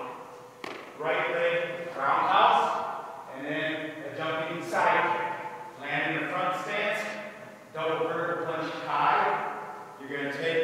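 A man's voice talking, with a single thump about half a second in.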